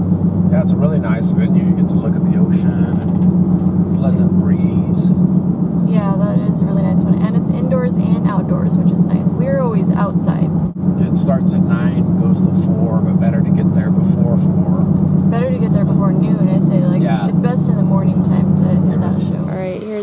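Steady engine and road drone inside a moving car's cabin, with a voice heard over it at times.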